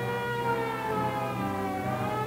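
A sustained wailing tone made of many held pitches, sagging slightly in pitch and rising again near the end.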